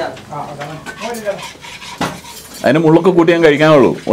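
Steel plates, bowls and spoons clinking and scraping on a table as people eat, with faint voices behind. A man's voice comes in loudly in the last second and a bit.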